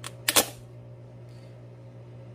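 A light click and then a quick, louder double knock in the first half second: kitchenware knocking against a ceramic mixing bowl while cottage cheese is added to a batter.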